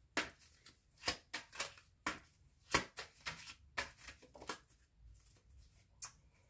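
A tarot deck being shuffled and handled by hand: a run of light, irregular card snaps and slaps, thinning out near the end.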